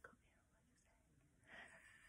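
Near silence, with a faint breathy laugh near the end.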